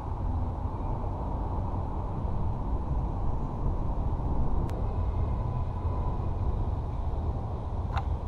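A steady low rumble of outdoor background noise with no speech, with a single faint click about halfway through.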